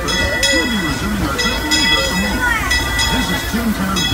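Steam locomotive bell ringing steadily, in pairs of clangs about every second and a half, as the train gets ready to depart, over the voices of passengers.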